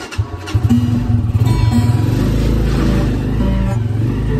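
A vehicle engine's rumble that comes up about half a second in and stays loud, with acoustic guitar notes ringing over it.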